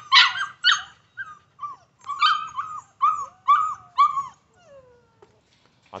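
Pit bull puppy whining and yipping: about a dozen short, high calls in quick succession, then a longer whine that falls in pitch near the end.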